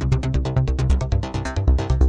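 Electronic synthesizer music: a fast pulsing sequenced pattern, about eight or nine notes a second, over a steady bass line.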